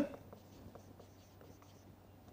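Faint, short strokes of a marker pen writing on a whiteboard.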